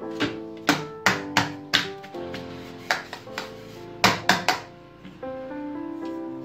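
An upturned metal cake tin knocked about ten times against a steel plate to loosen the baked cake inside, in irregular groups of sharp knocks, over background music with sustained notes.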